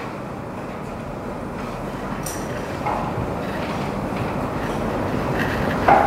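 Steady rumbling background noise that slowly grows louder, with a few faint clicks.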